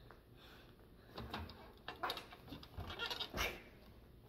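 A gymnastics bar being swung on: about a second in, a string of short knocks and thumps starts, about eight in all, with short vocal sounds from the girl on it between them.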